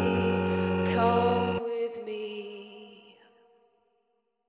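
A live band and female singer end a song on a held chord and sung note, stopping together about one and a half seconds in; the last notes ring out and fade to silence.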